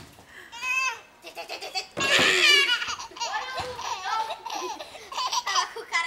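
A baby laughing in short high-pitched bursts, the loudest about two seconds in, followed by a run of shorter vocal sounds.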